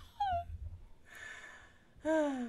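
A short falling vocal sound from a person, like a brief "ohh", then a breathy exhale or sigh lasting about a second.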